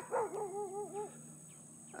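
A dog whining: one call about a second long that wavers up and down in pitch several times, somewhat distant.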